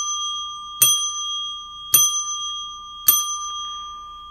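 A small bell struck by hand three times, about one strike a second, each ring left to sound and fade; the last ring dies away. It is rung once per dollar of a viewer's super chat, these being the last three of five rings for a five-dollar donation.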